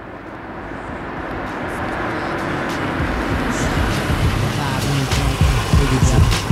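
A car running with road and street noise, fading in from silence and growing steadily louder, with a few light clicks.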